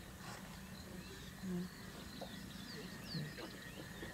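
Quiet bush ambience: faint scattered bird chirps, with two brief low sounds about one and a half and three seconds in.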